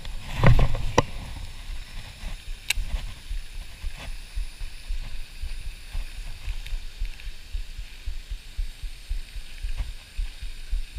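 Handling noise close to the camera: a loud rustling bump with a couple of clicks about half a second in, then low, uneven rumbling with a few faint clicks.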